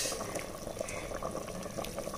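Mutton curry boiling in an open pressure cooker, a steady soft bubbling.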